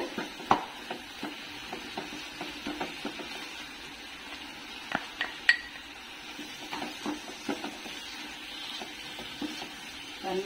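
Wooden spatula stirring and scraping thick grated beetroot in a nonstick frying pan, with scattered knocks of the spatula against the pan over a faint sizzle. The sharpest knocks come about half a second in and twice around five seconds in.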